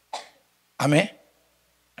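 A man's voice through a handheld microphone: two short vocal sounds, a faint breathy one at the start and a louder voiced one about a second in.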